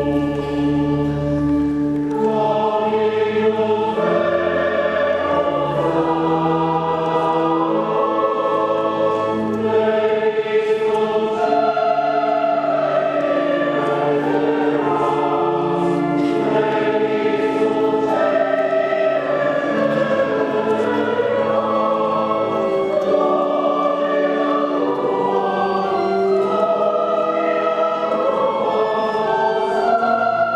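Church choir singing a hymn in several parts, with long held notes.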